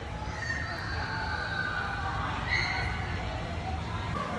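Faint, distant high-pitched voices over a steady low room hum.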